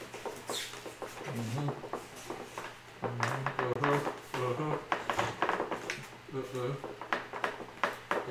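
Irregular light clicks, taps and creaks of a foam RC jet wing being worked onto its spars and pressed against the fuselage by hand, with brief low murmured voices.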